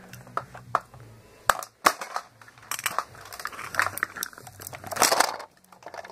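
Plastic toy figures being handled: scattered clicks and knocks as they are moved and bumped together, with a louder rustling scrape about five seconds in as the large Buzz Lightyear figure is pushed past over the carpet.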